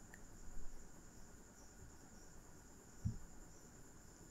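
Faint room background with a steady high-pitched chirr. A soft low thump comes about three seconds in.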